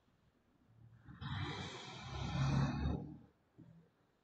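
A person's long exhaled breath, close to the microphone, lasting about two seconds, with a brief low hum near its end.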